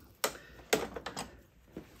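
Riccar 8900 vacuum's brush roll knocking and clicking against the plastic housing of the vacuum's base as it is pulled out by hand: two sharp clicks about half a second apart, then a few lighter ones.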